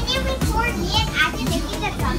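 Young children's high-pitched, excited voices, calling out and shrieking with pitch sliding up and down.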